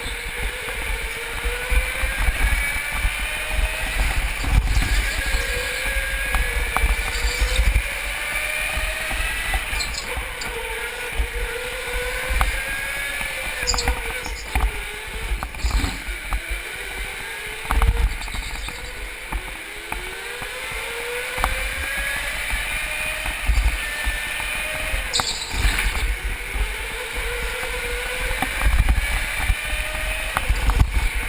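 Go-kart motor whining while racing, its pitch rising and falling every few seconds as the kart speeds up on the straights and slows into corners, with rumble and occasional knocks from the kart's vibration on the onboard microphone.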